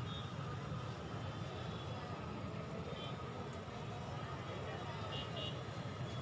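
Crowded street in steady, continuous din: many voices and motorbike engines mixed together. A few short, high horn beeps come through, two in quick succession near the end.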